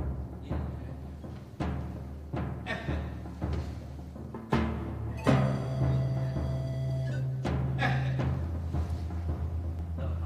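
Instrumental background music: deep drum-like strikes at uneven intervals over sustained low notes, with a held higher note in the middle.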